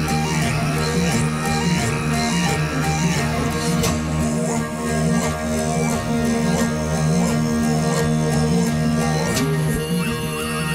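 Live Mongolian folk-metal music: bowed morin khuur (horsehead fiddles) and a plucked lute play a repeating riff over a steady low drone.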